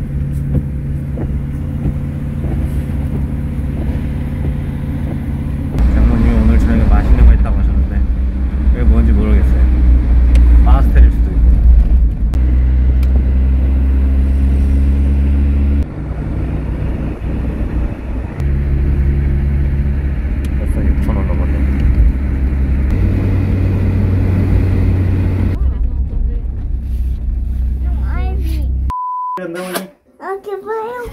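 Low, steady rumble of a car being driven, heard from inside the cabin. It is cut into several short clips that change suddenly, and voices talk over it in places. A short steady beep-like tone sounds about a second before the end.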